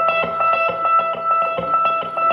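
Live band playing the instrumental intro of a reggae-pop song: a guitar picks a repeated figure at about four notes a second over a steady held tone.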